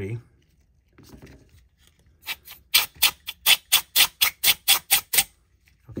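Can of compressed air puffed in a quick run of short hisses, about four or five a second for some three seconds, blowing debris out of an airgun regulator port.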